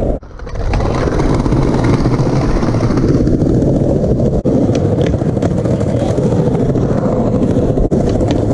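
Skateboard wheels rolling steadily over concrete pavers, a continuous rough rumble, with a couple of sharp clacks as the wheels cross joints in the paving.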